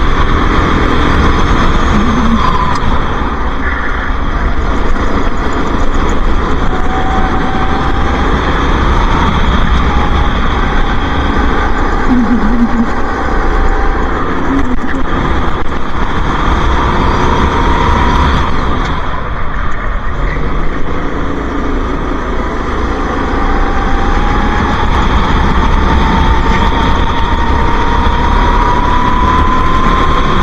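Racing go-kart engine heard from onboard at full pace, its note climbing slowly along the straights and falling away as the kart slows for corners, with two dips in level.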